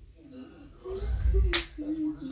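A single sharp finger snap about three quarters of the way through, just after a low thud of movement, over a child's humming voice.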